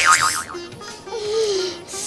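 Comic sound effects over light background music: a wobbling, boing-like tone at the start, then a lower gliding tone and a short hissing whoosh near the end.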